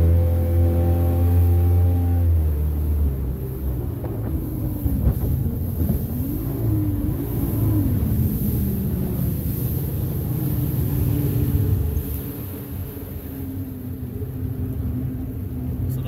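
Sea Ray Sea Rayder F16 jet boat's engine accelerating hard from a standing start with its trim tabs raised. The pitch holds high, then wavers up and down, and the engine eases off about twelve seconds in.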